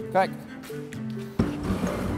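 Background music with steady held notes. About one and a half seconds in, a sudden low rumbling noise starts, from a plastic two-wheeled wheelie bin rolling on a concrete floor.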